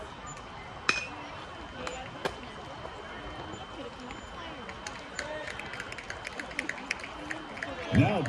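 Metal baseball bat striking a pitched ball about a second in: one sharp ping with a brief ring. Faint crowd chatter runs underneath, and a run of quick, sharp clicks follows a few seconds later.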